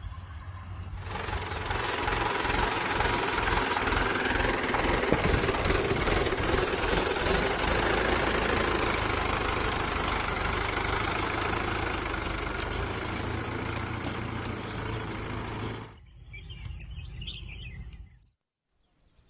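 Diesel tractor engine running steadily with a pulsing low beat, then cutting off abruptly near the end.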